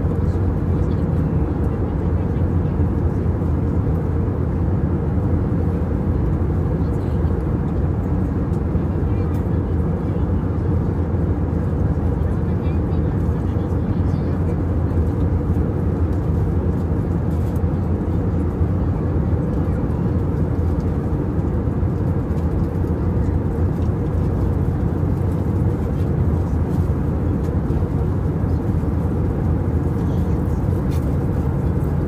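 Steady low rumble of an airliner cabin in flight: engine and airflow noise, unchanging throughout.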